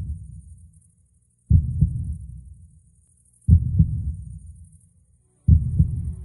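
Heartbeat sound effect: a deep double thump, like a lub-dub, about every two seconds, each beat dying away before the next. Faint music begins to come in near the end.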